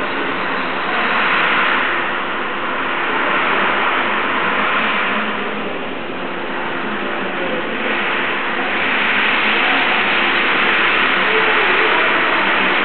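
Steady rushing background noise that swells for a few seconds twice, near the start and again in the second half.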